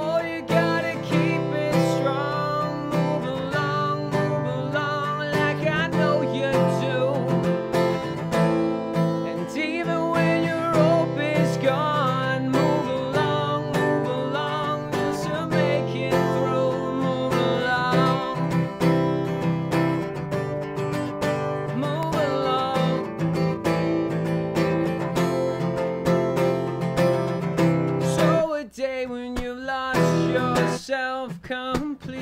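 Acoustic guitar strumming chords with a man singing over it, a live unplugged rock song; near the end the low strings drop out for a moment.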